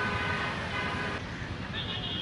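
Outdoor ambience with road traffic: a steady horn-like tone sounds until about a second in, with voices in the background.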